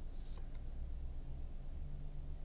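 Faint, steady low hum of a SEAT Ibiza's 1.0 TSI three-cylinder petrol engine idling, heard from inside the cabin, with a brief soft rustle near the start.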